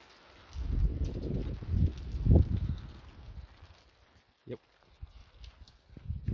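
Footsteps of someone walking over hail-strewn dirt with the phone, heard as irregular low thuds and rumble from about half a second in until about three seconds in, then dying away.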